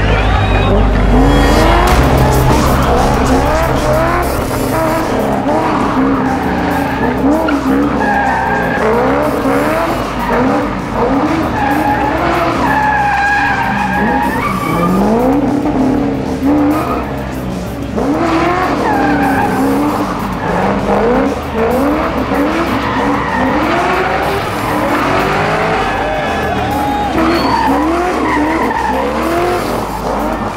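Chevrolet Corvette C6's V8 revving up and down over and over while drifting, with rear tyres squealing as they spin and burn. Music plays underneath.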